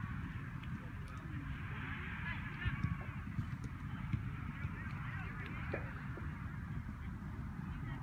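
Distant high calls, overlapping and coming and going, over a steady low rumble of wind on the microphone. A few dull thumps come around the middle.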